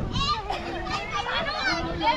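Many children shouting and calling over one another while playing in a stream pool, their high voices overlapping throughout.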